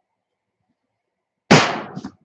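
A ricocheting BB pellet striking the outside of the shed, heard from inside as one sudden, loud bang about one and a half seconds in, ringing away briefly.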